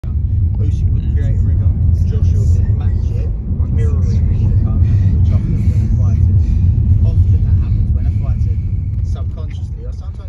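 Steady low rumble of a moving car heard inside the cabin, road and engine noise, easing off near the end.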